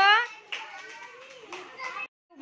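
Voices of young children in a room: a drawn-out word at the start, then quieter chatter and rustling, and another short call near the end.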